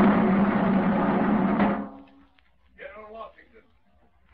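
Military snare drum roll of about two seconds, cut off sharply, used in an old-time radio drama to announce General Washington to the troops. The sound is thin, like an old broadcast recording. A faint voice follows about three seconds in.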